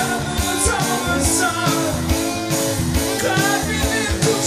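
Live rock band playing an instrumental break with drums, bass and guitars. A lead melody above them bends up and down in pitch.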